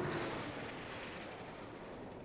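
Jet aircraft flying past overhead: a steady rushing engine noise that slowly fades away.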